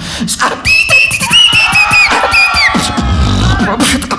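Human beatboxing into a microphone: rapid sharp clicks and snare hits under a line of high held tones that slide at their ends, then a deep bass hum about three seconds in.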